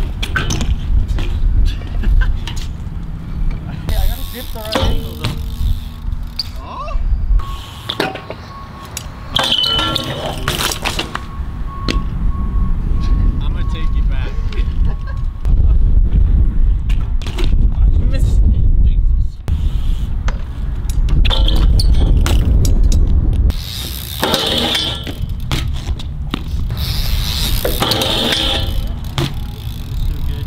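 BMX bikes riding a concrete skatepark: tyres rolling on concrete, with repeated clacks and knocks of bike parts on the metal stair handrail and of landings, over a steady low rumble.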